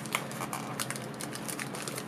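Clear plastic bag crinkling and crackling as fingers press and grip the radio wrapped inside it, a run of small irregular crackles.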